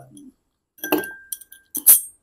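Ice cube dropped with tongs into a glass tumbler of rum, clinking. There is a clink about a second in that leaves the glass ringing with a short, thin tone. A few lighter clicks follow, then a sharp, louder clink near the end as the tongs go back into the ice glass.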